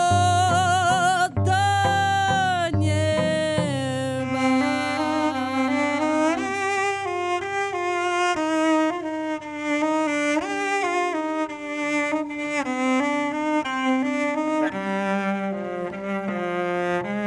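A woman sings long held notes with vibrato over her bowed cello for the first few seconds; after that the cello plays the melody alone, one bowed note stepping to the next.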